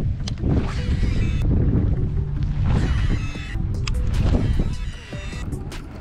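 Wind buffeting the microphone over choppy lake water, a heavy steady rumble, with water slapping against the kayak and a few faint clicks.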